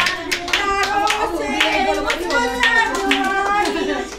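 A group of women clapping their hands in a steady rhythm, about three claps a second, while their voices carry on a devotional bhajan (Hindu hymn).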